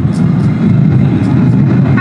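Loud low rumbling sound effect from the stage PA, the noisy opening of the dance track, swelling up at the start.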